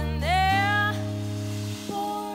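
Live band music: a singing voice slides up into a held note over sustained low notes from the band, which shift to a new chord about half a second in and fade out near the end.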